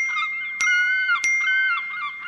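Short lighthearted beach-style music cue: a gliding, sliding melody line over bell-like struck notes that ring on, with three sharp attacks about half a second apart.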